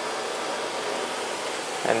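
Steady rushing noise of running lab equipment, even and unchanging, with no knocks or clicks.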